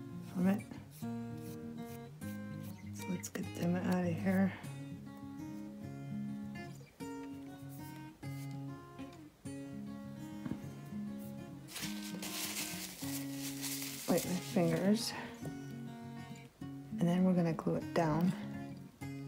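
Acoustic guitar background music plays throughout. A person's voice is heard briefly a few times without clear words, and a short rustle comes about twelve seconds in.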